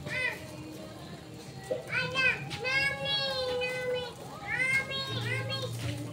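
Children's voices calling and shouting nearby: a few short high-pitched cries, then one long drawn-out call in the middle and more cries after it.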